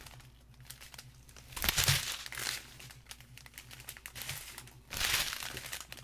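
Small clear plastic bags of diamond painting drills crinkling as they are handled, with two louder bursts of crinkling, about two seconds in and about five seconds in.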